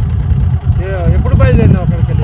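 A man speaking close to a handheld microphone, with a steady low rumble running underneath the voice.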